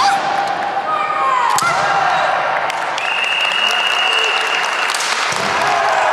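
Kendo bout: sharp cracks of bamboo shinai striking, at the start, about one and a half seconds in and near the end, with long shouted kiai from the fighters between them.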